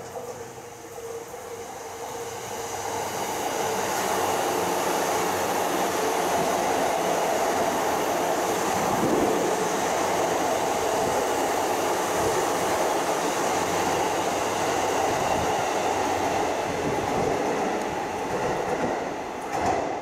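JR East E235 series electric multiple unit running past on the rails, its wheel and running noise building over the first few seconds. It holds steady and loud while the cars go by, then eases off near the end as the last car passes.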